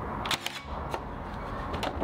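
Cordless Milwaukee 18-gauge brad nailer firing finish nails into a pine frame: two sharp shots about a second and a half apart.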